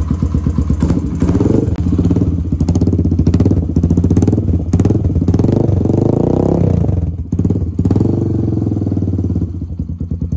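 Yamaha XTZ 125's single-cylinder four-stroke engine revved with repeated throttle blips while standing still, each rising in pitch and falling back, the longest about six seconds in; it settles back to a lumpy idle near the end.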